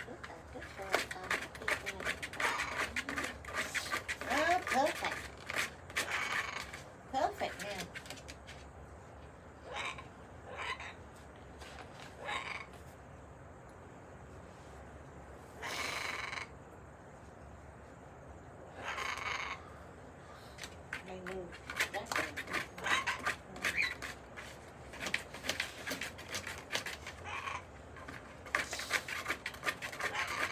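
Pet parrots chattering and giving two short harsh squawks in the middle, among scattered clicks and crackling rustles.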